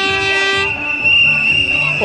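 Toy noisemakers blown by children: a held, horn-like note that stops under a second in, over a steady high, shrill whistle tone that carries on throughout.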